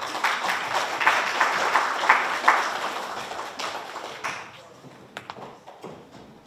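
Audience applause from a room of seated guests, dying away after about four to five seconds, with a few scattered claps near the end.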